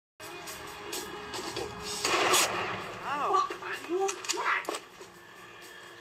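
Gunfire: scattered sharp shots, then a louder, longer burst about two seconds in, followed by voices.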